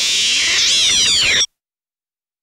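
Last notes of an electro track: a cluster of high, gliding synth tones sweeping up and down, cutting off suddenly a little past halfway.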